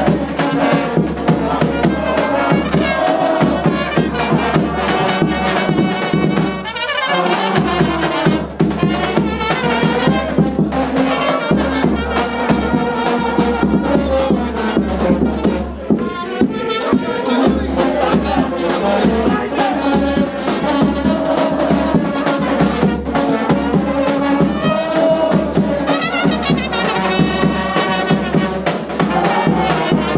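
Live brass band playing loudly: trumpets and lower horns carry the tune over a steady bass-drum-and-cymbal beat, in a crowded, echoing room.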